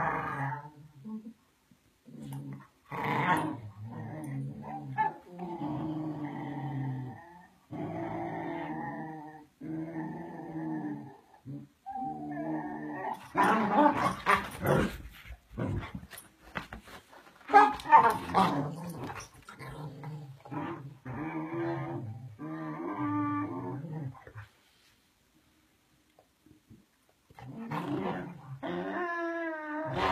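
Two dogs play-fighting, growling in runs of a second or two, with louder, harsher bursts about halfway through. The growling stops for about three seconds near the end, then starts again.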